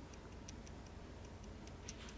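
Faint, light ticks, several a second and unevenly spaced, over quiet room hum.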